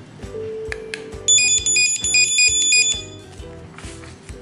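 Opticon OPR2001 handheld barcode scanner beeping as it reads configuration barcodes: two short beeps about a second in, then a rapid run of electronic beeps hopping between pitches for nearly two seconds, the loudest sound, over steady background music.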